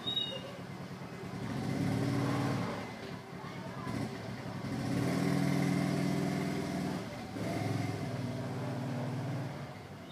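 Low engine hum of passing motor vehicles, swelling and fading about three times.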